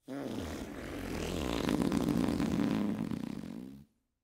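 A long, drawn-out fart sound effect: a buzzing, fluttering tone that bends up in pitch at the start, swells in the middle and falls away before cutting off just before the end.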